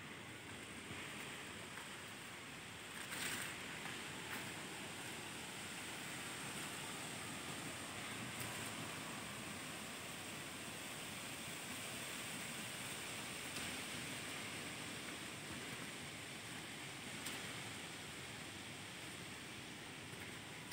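Steady, soft rushing of wind through the forest's trees and foliage, with a brief louder rustle about three seconds in.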